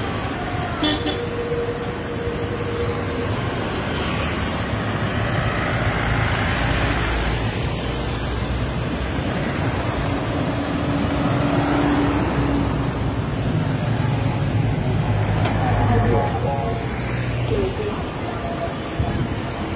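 Road traffic and vehicle engine rumble heard while travelling along a highway in a convoy, with a car horn held for about two seconds near the start and a longer, lower horn around ten seconds in.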